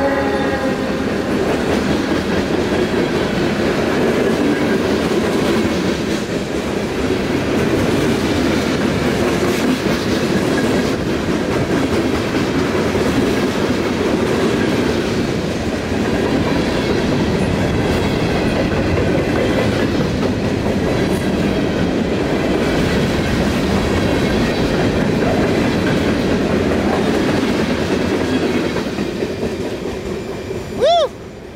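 Freight cars of a mixed freight train rolling past close by: a steady, loud rumble and clatter of steel wheels on the rails. The last of a locomotive horn blast fades out about a second in.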